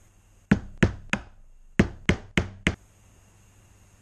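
Seven sharp knocks, three and then after a short pause four more, about three a second.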